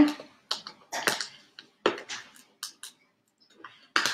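Sticky vinyl transfer paper being worked off a decal on a clear plastic box: a run of irregular sharp crackles and clicks with short gaps between them.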